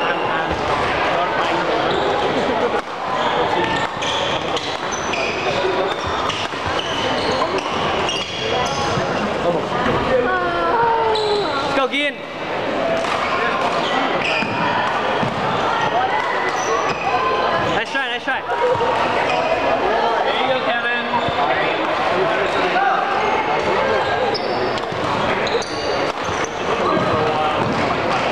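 Echoing sports-gym ambience: many people talking at once, blurred into babble by the large hall, with scattered thuds and knocks of play on the courts.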